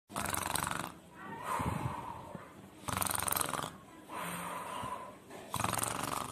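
Cartoon snoring sound effect: three rattling snores about two and a half seconds apart, each followed by a whistling breath out.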